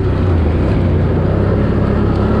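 Four-wheel-drive ATV engine running under throttle as the quad is ridden over a dirt track, its engine note holding fairly steady.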